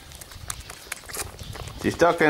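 Goat kid sucking water from a plastic bottle's rubber teat: irregular small clicks and sucking noises.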